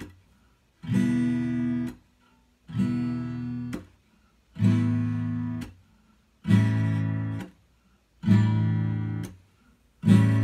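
Acoustic guitar strummed one chord at a time at a slow, even pace, five strums about two seconds apart. Each chord rings for about a second and is then cut short, leaving a short silence before the next: a beginner's chord-by-chord song intro.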